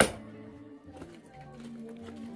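Background music with held notes throughout, and one sharp metallic strike right at the start: a hammer knocking apart a concrete-block wall.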